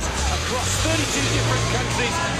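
Car engines running near a crowd, a steady low hum whose pitch steps up about a second in, under a hubbub of voices.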